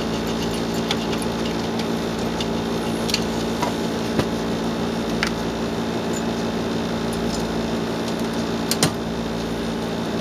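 A steady hum runs through the room, with a few sharp small clicks and knocks as the grow light's wires and housing are handled.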